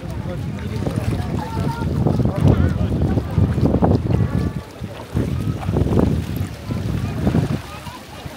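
Gusty wind rumbling on the microphone in uneven swells, with voices of people talking around it.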